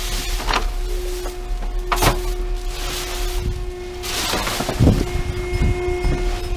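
Plastic trash bags rustling in bursts as gloved hands dig through a dumpster, with a couple of knocks about two seconds in and near five seconds. Quiet background music with long held notes runs underneath.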